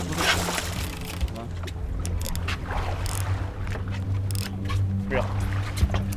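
Boat engine idling with a steady low hum, and a rushing noise over it in the first second.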